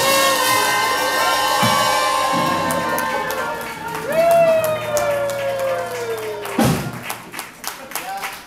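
A traditional jazz band with trumpets, trombone, sousaphone and drums ending a number: a held final chord, then a long note sliding down in pitch, cut off by a last hit about six and a half seconds in. Audience applause and cheering follow.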